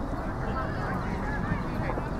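Steady wind rumble on the microphone with faint, distant shouts from players and onlookers across an open field.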